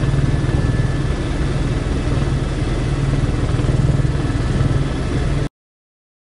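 Helicopter cabin noise in flight: a steady engine and rotor drone with a rhythmic low pulsing and a thin steady whine above it. It cuts off abruptly about five and a half seconds in.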